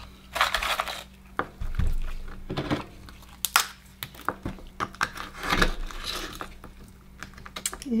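An Akoya pearl oyster being shucked with a small knife on a wooden cutting board: irregular clicks, scrapes and crackles of the blade and shell against each other.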